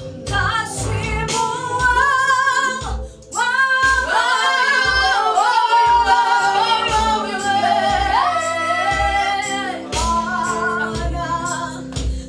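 A small group of young singers performing a gospel song into handheld microphones: a woman's voice leads, with other voices joining in harmony. A steady low beat runs underneath, and the singing breaks off briefly about three seconds in.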